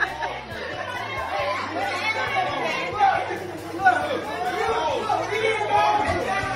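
Overlapping chatter of several people talking at once in a room, with music playing faintly underneath.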